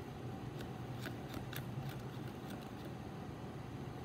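A thermometer stirring a solution in a foam-cup calorimeter gives a handful of light, quick clicks and taps in the first half, over a steady low hum.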